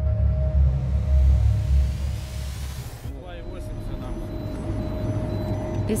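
Dark, deep music with a rising whoosh that cuts off about halfway. Then the rumble of a vehicle driving fast along a road, with a radiation meter beeping to warn that radiation levels are too high.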